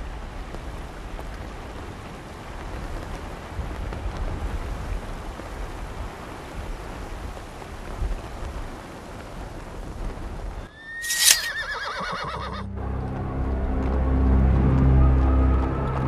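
A horse neighs once, a short whinny falling in pitch about eleven seconds in, over a steady noisy background. Music with low sustained tones comes in after it and grows louder.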